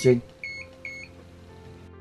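Two short, identical high electronic beeps about 0.4 seconds apart from a handheld electro-acupuncture pen, the kind it gives at a button press.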